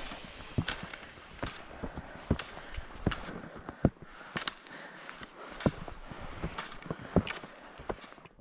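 A ski tourer moving along a snowy skin track: skis on climbing skins sliding over the snow and ski poles planting, heard as a soft hiss with irregular clicks and crunches every half second or so.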